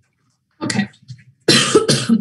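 A person coughing and clearing their throat: a short cough a little over half a second in, then a louder, longer one from about a second and a half in.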